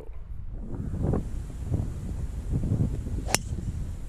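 A single sharp crack of a golf club striking the ball off the tee, about three seconds in, over a low rumble of wind on the microphone.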